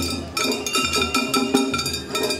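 Shagiri festival music: small hand-held gongs struck in a quick, steady rhythm over festival drums.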